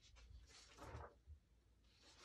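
Faint rustling of a paper receipt being handled and looked through.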